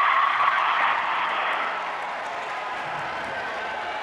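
Gym crowd cheering and applauding a made three-pointer, loudest at first and dying down over about two seconds.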